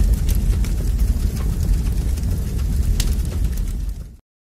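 Fire sound effect: a deep, steady rumble with scattered sharp crackles, cutting off abruptly at the end.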